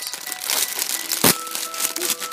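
Plastic bag crinkling and rustling irregularly as hands open it, with one louder, sudden crackle a little over a second in.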